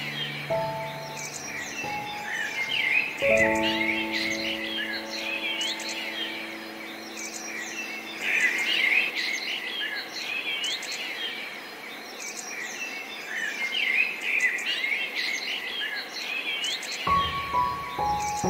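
Songbirds chirping and trilling continuously over soft, slow piano. A piano chord sounds about half a second in, another about three seconds in that rings out and fades, then only the birds until a new chord near the end.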